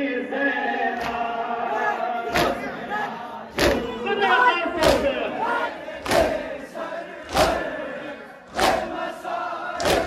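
A crowd of mourners chants a noha in unison, with massed hand-on-chest matam striking together. About two seconds in, the strikes begin to land in an even beat, roughly once every second and a quarter, about seven in all.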